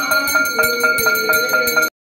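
Temple aarti bells rung rapidly and evenly, about six or seven strokes a second, over a steady ringing tone. The sound cuts off abruptly just before the end.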